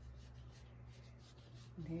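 Faint, irregular scratchy rubbing of wool fibre dragging off the carding cloth of a blending board as it is rolled up between dowels into a rolag.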